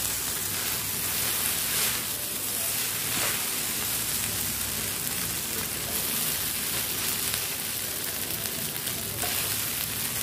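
Noodles and vegetables sizzling in a non-stick pan over a high flame while being stirred and tossed, a steady frying hiss with a few louder stirring scrapes about two and three seconds in.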